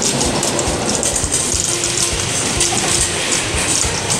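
Wire shopping cart rolling over a tiled floor, its wheels and basket rattling steadily, with music faintly behind it.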